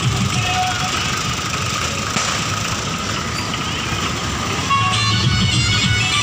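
Tractors running as they tow trailers past at close range, a steady low engine rumble with road noise. Music plays alongside and comes up louder near the end.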